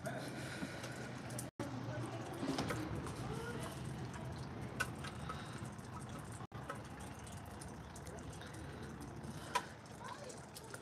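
Wet snow and sleet falling outdoors: a steady hiss with scattered light ticks of drops and pellets striking surfaces, and faint, indistinct voices in the background. The sound cuts out briefly twice.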